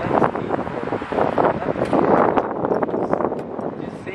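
Wind buffeting the camera microphone in uneven gusts.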